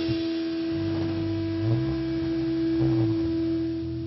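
A single steady feedback tone from an electric guitar amp, held without a break. Low bass guitar notes come in about a second in, sliding up and back down twice underneath it.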